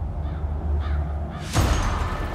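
Storm sound effects: a deep rumble of thunder with three faint crow caws, then a sudden loud crack of thunder about one and a half seconds in.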